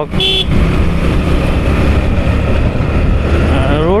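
Riding noise from a motorcycle on a road with traffic: a steady low drone from the engine, with road and air rumble at the rider's microphone.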